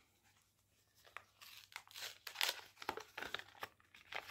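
A small packaging packet being torn open and crinkled by hand, starting about a second in.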